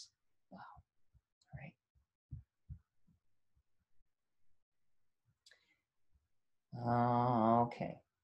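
A few faint light taps and clicks while handwritten notes on a tablet are scrolled through. About seven seconds in, a drawn-out vocal hesitation sound, a held 'mmm' or 'uhh', lasts about a second.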